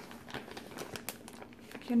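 Clear plastic bag holding wax melts crinkling as it is handled, an irregular scatter of small crackles.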